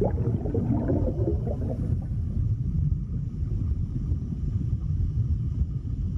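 Underwater sound effect: a deep rumble with bubbling gurgles for the first two seconds, settling into a steady low rumble with faint high steady tones above it.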